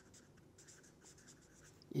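Marker pen writing on paper: faint, irregular scratching strokes as a word is written out.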